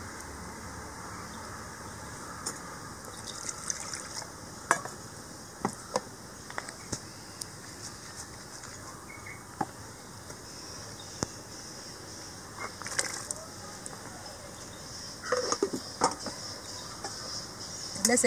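Curry simmering in a steel pot on a stove: a steady hiss with scattered light clicks and clinks of steel utensils, busiest about three seconds before the end. A ground paste is poured from a steel mixer jar into the curry at the start.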